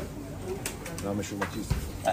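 A man speaking Hindi quietly, in short broken phrases with pauses.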